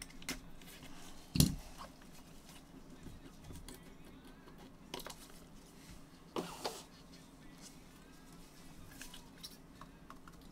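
Sparse handling noises from trading-card packaging and plastic card holders: a sharp knock about a second and a half in, then a few fainter clicks and rustles.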